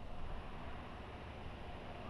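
Faint, steady outdoor background noise with a low rumble, with no distinct event.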